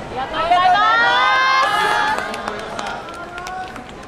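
A loud, drawn-out shouted call that rises in pitch over about two seconds, followed by a quieter held voice, with scattered sharp taps in the middle.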